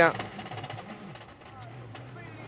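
Citroën DS3 WRC rally car running on a gravel stage, its engine heard as a faint, steady note with a brief change in pitch about one and a half seconds in.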